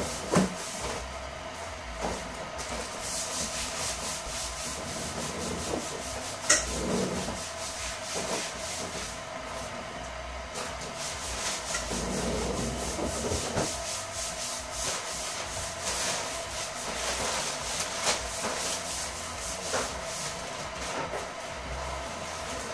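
Rustling and crinkling handling noises, with irregular small clicks and a sharper click about six and a half seconds in, over a steady faint hum.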